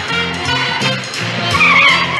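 Television score with a bass line stepping from note to note. About one and a half seconds in, a car's tyres squeal briefly over it.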